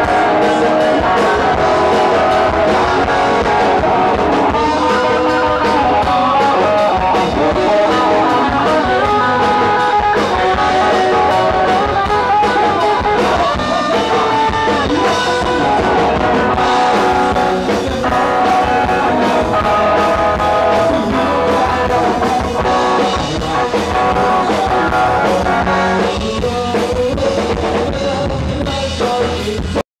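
Live rock band playing loudly: a singer on microphone over guitar and a drum kit.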